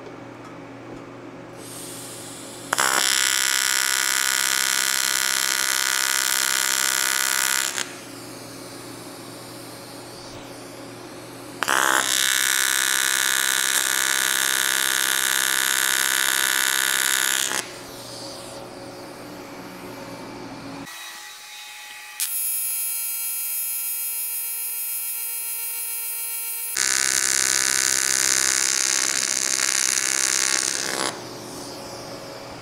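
AC TIG welding arc on aluminum buzzing in several welds a few seconds each, with short pauses between. The AC frequency is turned down low for welding an angle bracket.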